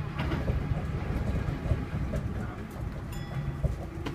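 Running noise inside a Tama Toshi Monorail car, its rubber-tyred bogies rolling along the concrete guideway beam: a steady low rumble with irregular knocks. A short high-pitched tone sounds a little after three seconds.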